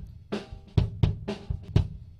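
Recorded drum-kit beat played back, its close-miked kick drum heard raw without EQ: a steady run of hits with a boxy midrange and a papery, flapping beater sound.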